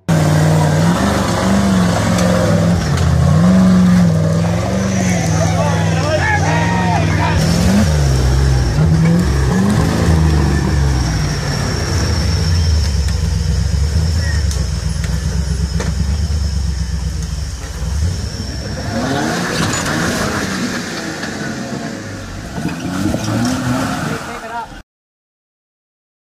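Off-road vehicle engine revving up and down repeatedly, its pitch rising and falling, then settling into a rougher, lower run; a thin high whine runs steadily through the middle.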